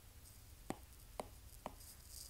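Three short, sharp taps on a tablet's glass screen, about half a second apart, over a faint low hum.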